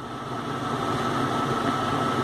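Steady background hum and hiss with a thin, high, steady whine, like a room fan or air conditioner running. There are no clicks or other sudden sounds.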